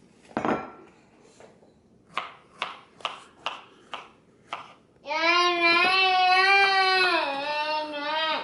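A knife chopping strawberries on a plastic cutting board: about six quick, sharp strokes, roughly two a second. Then a long, drawn-out, wavering call of about three seconds that drops in pitch near the end; it is louder than the chopping.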